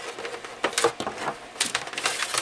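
Power cord being unwrapped from the plastic housing of a Honeywell HF-810 turbo fan, with a handful of scattered clicks and knocks as the cord is handled against the housing.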